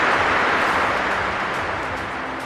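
Logo-intro sound effect: a hissing whoosh that peaks at the start and slowly fades, over a faint low held tone.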